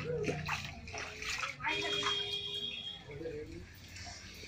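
Shallow floodwater sloshing and splashing on a flooded floor, with people's voices over it.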